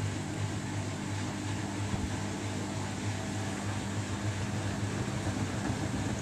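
Samsung Bespoke AI washing machine (WW11BB704DGW) running its final spin at a low drum speed, with a steady motor hum.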